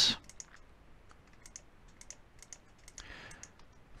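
Faint computer mouse and keyboard clicks: a scattering of light, separate clicks while several items are Control-clicked in turn.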